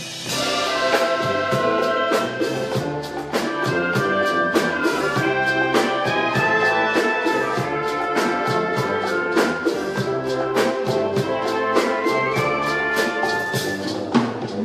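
A live brass orchestra playing an upbeat tune, horns holding bright melody notes over a steady percussion beat.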